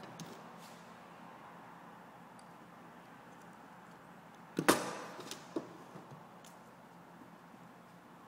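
Hand tools working heavy fishing-rig wire on a jig: one sharp snap a little past halfway, followed by a few lighter clicks and knocks.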